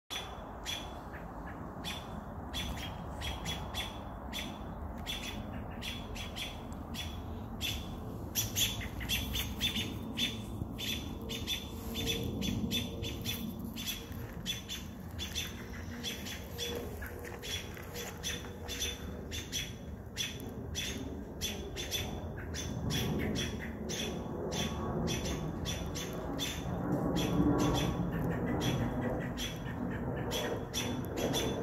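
American robins giving a run of short, sharp alarm notes, several a second in irregular bursts. The calls are robins mobbing a perched owl.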